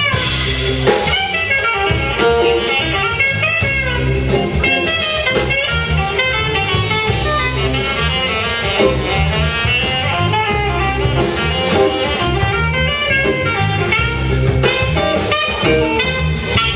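Jazz quartet playing live: saxophone, electric guitar, bass guitar and drum kit, with continuous dense melodic lines over a steady drum beat.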